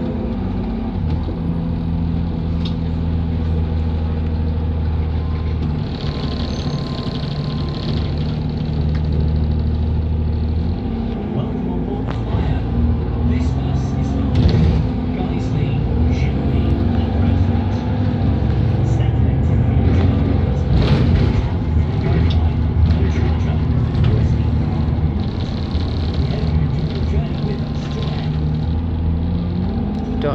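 Bus engine running under way, its note stepping up and down in pitch as the bus pulls away and changes speed. The onboard automated announcement speaks over it, giving the bus's destinations (Guiseley, Shipley and Bradford) and the next stop, Whitehouse Lane.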